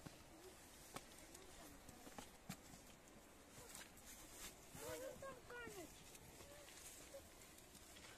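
Faint scuffs and knocks of shoes and hands on rock as children scramble up between boulders, with a child's high voice calling out briefly about five seconds in.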